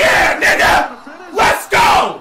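A man yelling in excitement: loud wordless shouts in two quick pairs.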